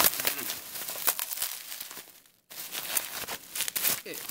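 Plastic bubble wrap crinkling and crackling as it is pulled and unwound by hand from a toy figure: a dense run of small crackles that breaks off for a moment about two and a half seconds in, then starts again.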